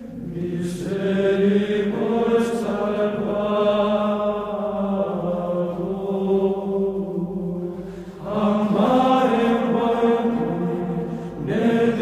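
Background music of slow vocal chant: long sustained sung lines in phrases, with new phrases starting about a second in, at about eight seconds and just before the end.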